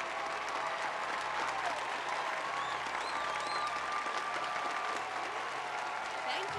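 Audience applauding, a steady spread of many hands clapping.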